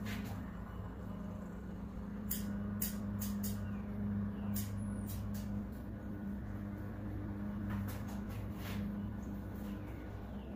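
Barber's scissors snipping hair: a scattering of short, sharp clicks, irregularly spaced, over a steady low hum.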